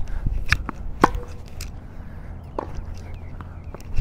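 Tennis ball meeting strings and hard court during a baseline rally: a series of short, sharp pops, the loudest about a second in, with fainter ones after it.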